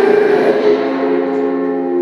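A strummed guitar chord left ringing, its notes holding steady and slowly fading, just after a held sung note dies away.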